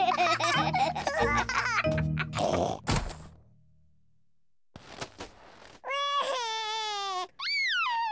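Cartoon music with laughter, then a thump about three seconds in as a big snowball knocks a small child over, a moment of silence, and a cartoon toddler's loud wailing cry from about six seconds in, rising and falling in two wails.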